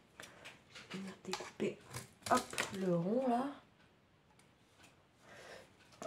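Cardboard and a paper tube being handled, with short rustles and taps. About three seconds in, a voice gives a brief wordless murmur with a wavering pitch.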